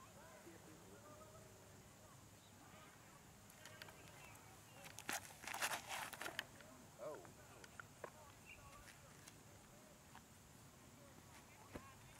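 Quiet outdoor ambience, broken about five seconds in by a quick run of scuffs and clicks lasting about a second as a disc golfer's feet plant and drag on the tee pad during a drive.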